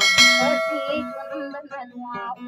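A bright bell-like ding from a subscribe-button animation's sound effect, loud at first and fading over about a second and a half. Acoustic guitar strumming carries on underneath.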